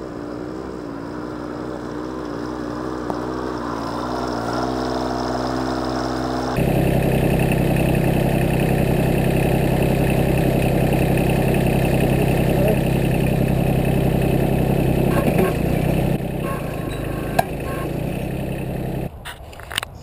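Compact tractor engine running steadily, at first a little way off and then, from about a third of the way in, close by and louder. Near the end it drops away, with a single sharp click.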